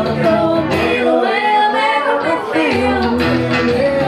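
Live band music: several voices singing together over keyboard and guitars. About a second in, the low accompaniment drops away for a second and a half, leaving mostly the voices, then comes back in.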